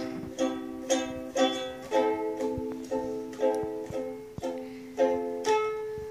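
A toddler strumming a ukulele, sounding the same chord over and over at about two strums a second, some strokes louder than others. Near the end one note is left ringing as the strumming stops.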